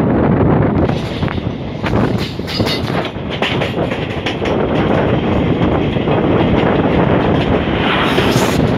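Wheels of a moving train coach heard from its open door: a steady rumble with wind, and irregular clickety-clack clicks over the rail joints. Near the end, a louder rush as an oncoming electric locomotive on the next track draws alongside.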